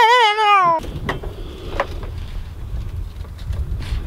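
A man's loud, warbling, wavering vocal noise for under a second, cut off suddenly. Then wind rumbles on the microphone, with faint voices in the background.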